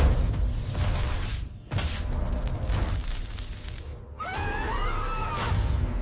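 Cartoon electric-beam sound effect: a crackling, hissing rush over a low rumble, in two surges each broken off by a brief drop. Near the end come wavering squeal-like tones.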